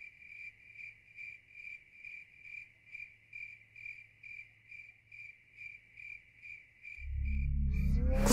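A cricket chirping steadily, faint, about two high chirps a second. Near the end a low music drone swells in.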